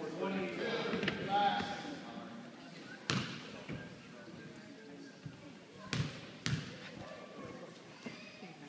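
A basketball bounced on a hardwood gym floor: a sharp bounce about three seconds in, a faint one just after, and two more about half a second apart near six seconds, each with a short echo in the hall. Voices talk in the opening seconds.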